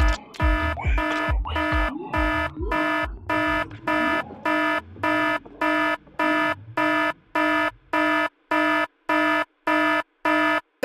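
Psytrance breakdown: a chopped synth chord pulses on and off a little over twice a second. A kick drum thumps under it for the first few seconds, then drops out, leaving the gated chord alone, its gaps falling to silence near the end.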